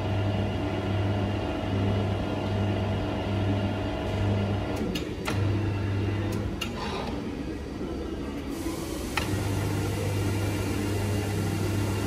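Electric motor of a 240 V Steelmaster PK-10 section/ring roller driving its knurled bottom rolls as a steel rod is bent through them. It gives a steady low hum that cuts out and comes back several times, and there are a few sharp clicks around the middle.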